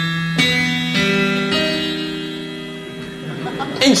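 A keyboard playing a suspense chord. Its notes come in one after another over the first second and a half, then the chord is held and fades slowly.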